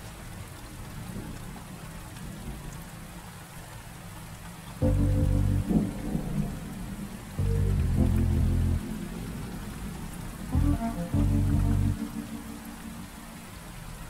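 Steady rain falling, with slow, low sustained music notes entering about five seconds in and repeating about every three seconds, each held for about a second.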